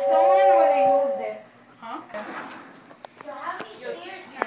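A toy electric train's horn sounding a steady two-note chord that cuts off about a second in, with a voice rising and falling over it; then voices and a few light knocks.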